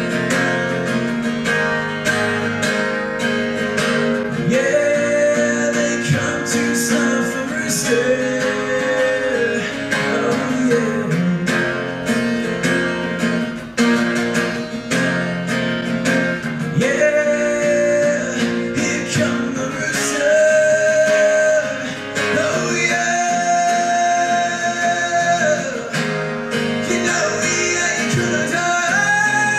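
Acoustic guitar strummed steadily, with a male voice singing long held notes over it.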